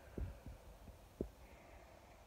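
Two faint low thumps about a second apart, over a quiet low hum.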